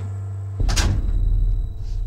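A wooden door pulled shut, with a thud about half a second in, followed by a low rumble that fades.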